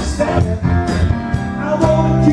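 Live band playing an upbeat soul-rock song: electric guitars and bass over drums keeping a steady beat of about two hits a second.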